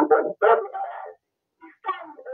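Speech only: a voice talking, with a pause of about half a second midway.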